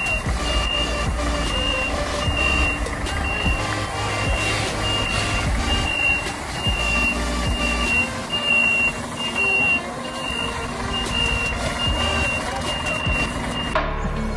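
Reverse alarm on a Scania tanker truck beeping steadily, about two high beeps a second, over the truck's diesel engine running.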